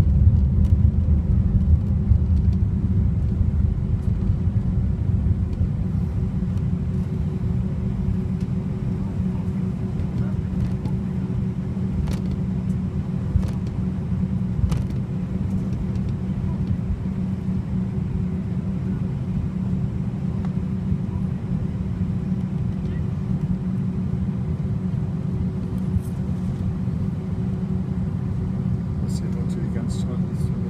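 Jet airliner cabin noise during taxi: a steady low rumble of the engines at low thrust, with a faint steady hum above it and a few light ticks.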